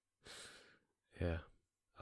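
A man's soft breathy sigh, close to the microphone, lasting about half a second and trailing off, followed by a quiet spoken "yeah".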